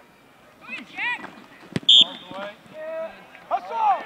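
Football extra-point kick: a single sharp thud of the foot on the ball a little under two seconds in, followed at once by a brief shrill whistle-like tone. Spectators call out and shout around it.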